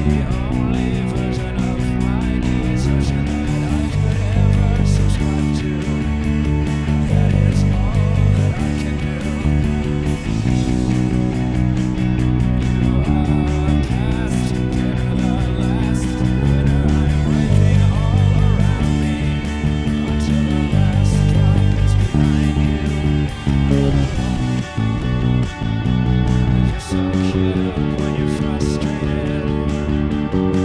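Sterling StingRay electric bass played along with a rock band recording that has electric guitars and drums. The bass carries steady, repeating note patterns that change every second or so.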